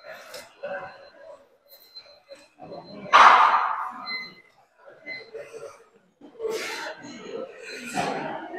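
A man exhaling hard with effort while doing rope cable curls, two loud breaths about three and six and a half seconds in.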